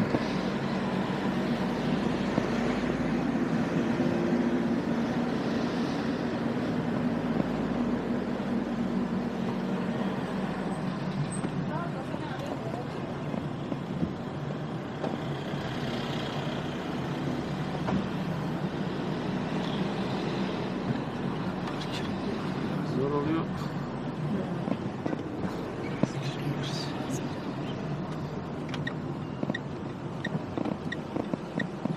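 Steady engine and road hum heard inside a moving car's cabin.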